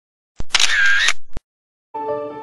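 A camera shutter sound, about a second long, opening with a sharp click and closing with another, set between short silences.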